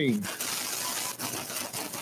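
Steady, even hiss of room noise in a large hall, after a voice over the PA finishes calling a number at the very start.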